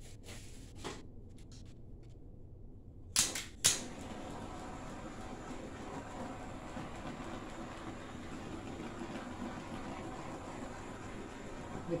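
Handheld butane torch: sharp clicks, two of them loud about three seconds in as it lights, then the flame hissing steadily. It is being passed over wet poured acrylic paint to pop air bubbles.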